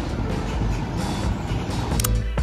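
Street traffic: cars driving along a city street, a steady rumble of engines and tyres, with background music underneath.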